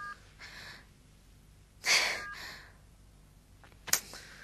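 A woman's audible, upset breathing, with one sharp loud breath about two seconds in. A mobile phone's two-tone keypad beeps sound at the start and once more just after the sharp breath, and a sharp click comes near the end.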